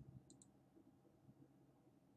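Near silence: room tone with one faint, short click about a third of a second in, from working a computer's controls.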